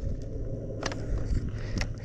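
Low outdoor rumble, with a faint sharp click a little under a second in and another near the end.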